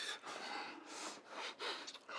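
A man breathing heavily during a kiss: a run of soft, breathy exhalations and gasps, several in two seconds.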